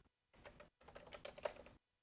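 Faint computer keyboard typing: a short run of keystrokes finishing a line of text, ending with the Enter key.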